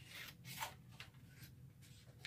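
Faint rustling of sublimation transfer paper being handled, several short rubs and crinkles.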